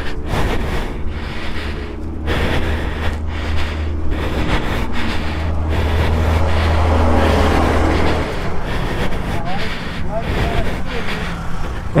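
Motorcycle ride on the move: a steady low engine rumble under wind noise on the rider's microphone, swelling toward the middle. The low rumble cuts off about eight seconds in, leaving mostly wind.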